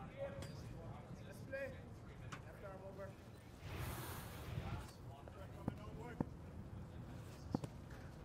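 Faint ground ambience with distant voices, then a broadcast graphics whoosh about four seconds in as an animated team-logo transition plays. After it come a few short, sharp clicks over a low background rumble.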